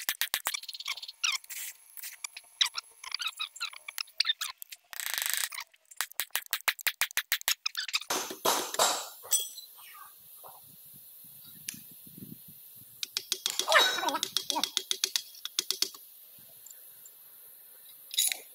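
Quick runs of metal-on-metal strikes: a steel bar driven repeatedly against the end of a loader gearbox gear shaft carrying gears and a bearing. The strikes come in two rapid runs, one at the start and one about six seconds in, with scattered clinks and clatter of steel gearbox parts being handled between and afterwards.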